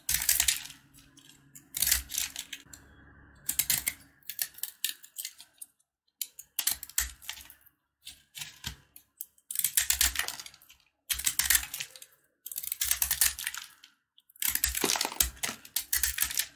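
Snap-off utility knife blade cutting into crumbly soap blocks: bursts of crisp crackling, each about a second long, repeated about nine times with short pauses between.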